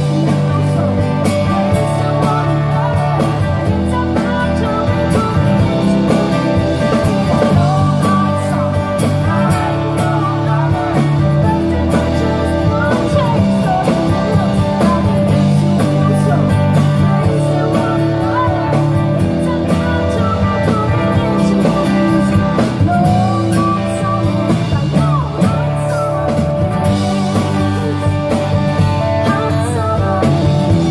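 A live country-rock band playing through the PA: electric guitars, bass and drum kit, with a woman's lead vocal.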